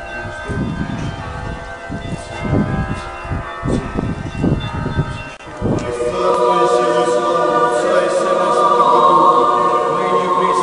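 Church bells ringing, with wind rumbling on the microphone, then an Orthodox church choir singing a cappella, coming in louder about six seconds in and holding long sung chords.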